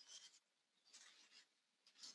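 Near silence, with only a few faint, brief high-pitched traces.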